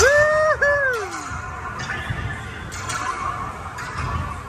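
A high two-part whoop in the first second, held and then falling away, likely a rider cheering as the train pulls off. It is followed by the steady rumble of the Slinky Dog Dash coaster train rolling along its track.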